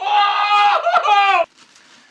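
A man's loud, high-pitched drawn-out vocal cry, held for about a second and a half and then cut off suddenly.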